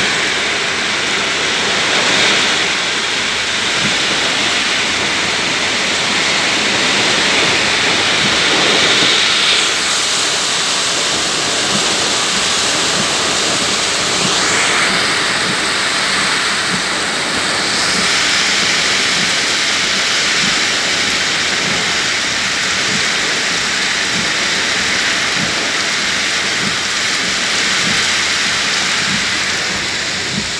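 Loud, steady rush of whirlwind wind and heavy driving rain during a puting beliung (small tornado).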